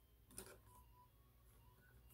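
Near silence, with one faint click about half a second in as the plastic action figure's shoulder joint is turned.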